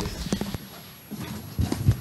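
Scattered light knocks and clicks of objects being handled on a table, a few close together near the start and a few more in the second half.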